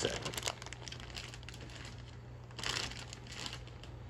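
Clear plastic bags holding model-kit sprues crinkling as they are handled and moved around in the box, with a louder rustle in the first half-second and another a little past halfway.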